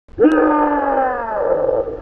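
A man's long, drawn-out wordless vocal cry, one sustained sound that slides slowly down in pitch and fades near the end.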